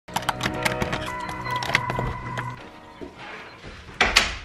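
Opening music: a held chord with many sharp clicks over it, which stops about two and a half seconds in. After it come quieter, scattered clicks.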